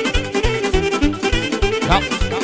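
Instrumental Romanian folk dance music from a wedding band: keyboard bass and chords in a fast oom-pah beat of about four strokes a second under a wavering lead melody, which slides quickly upward near the end.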